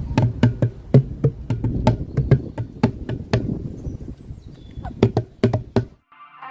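A set of outdoor playground drums struck by hand: a fast, irregular run of about a dozen and a half low, booming hits, stopping just before the end.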